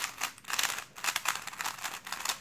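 GAN 354 M magnetic speedcube with its layers turned quickly by hand: a rapid, uneven run of plastic clicks and clacks as the layers snap into place.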